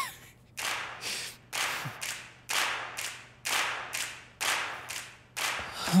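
Slow, steady hand clapping, about two claps a second, each clap ringing briefly in the room.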